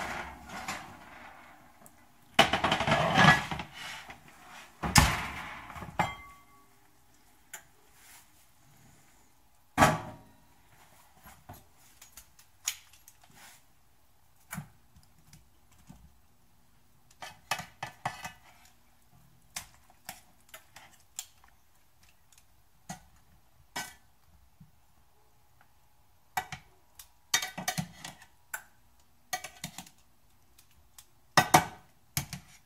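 Enameled cast-iron skillet and lid clattering as the pan is pulled from an oven rack and set down on a glass-top stove, with sharp knocks about 5 and 10 seconds in. Later comes a run of scattered clicks and scrapes of a metal utensil against the pan as the roast is turned.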